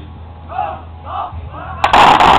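A volley of rifle fire from a line of soldiers near the end: a couple of sharp cracks merging into one sudden loud blast that rings on briefly.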